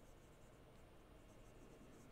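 Faint strokes of a dry-erase marker writing on a whiteboard, a few short scratches in the first second and a half, then near silence.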